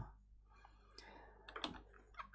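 Near silence: room tone with a few faint computer input clicks in the second half.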